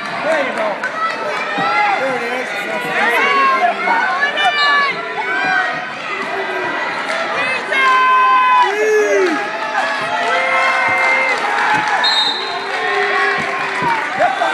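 Crowd of spectators shouting and yelling encouragement at a wrestling match, many voices overlapping, with several long held yells.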